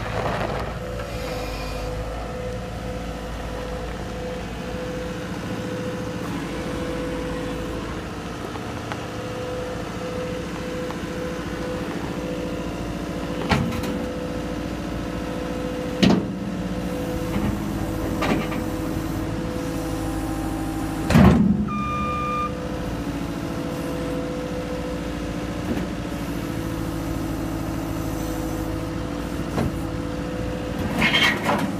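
Caterpillar 246C skid steer's diesel engine running steadily. Four sharp clanks come in the second half, the loudest about two-thirds of the way through.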